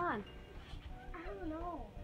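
Two drawn-out, wavering cries with a wobbling pitch, each falling away at its end: the first fades just after the start, the second comes about a second in and lasts under a second.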